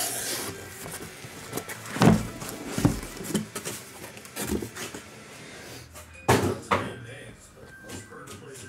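Shrink-wrapped trading-card boxes and their cardboard case being handled and set down on a table. The result is a series of separate knocks and thumps, the loudest about two seconds in and a pair a little after six seconds.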